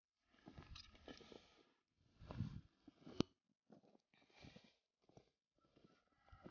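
Near silence with faint, scattered rustling and one sharp click a little over three seconds in.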